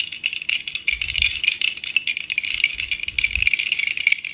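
Round ice balls swirled in a glass tumbler, clinking rapidly and continuously against the glass and each other in a steady rattling clatter.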